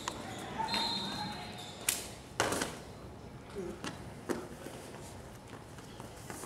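Wrestlers' feet and knees hitting a rubber wrestling mat during a takedown drill: a short squeak about a second in, then sharp slaps, two close together about two seconds in and one more a couple of seconds later, in a large echoing gym.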